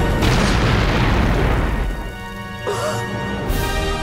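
Cartoon boom-and-crash sound effect of a giant cupcake bursting out of an oven, dying away over about two seconds, over the show's orchestral music. A short swish follows near the end.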